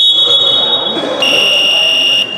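Basketball referee's whistle blown in one long, shrill blast that drops a little in pitch and gets louder about a second in, calling play dead.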